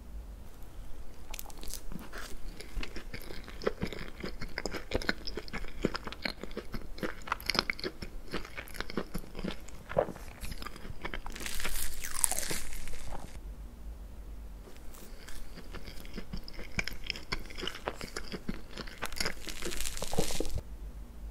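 Close-miked chewing of a mouthful of soft chocolate layer cake: irregular wet mouth clicks and smacks. Partway through, a louder noisy sound lasts about two seconds.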